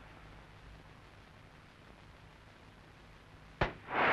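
Low steady hiss, then one sharp thump near the end as a foot strikes a football in a penalty kick.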